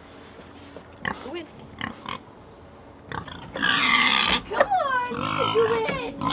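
Pigs grunting briefly, then one pig squealing loudly for under a second, followed by several falling squeals, as a stubborn pig resists being pushed into a livestock transporter.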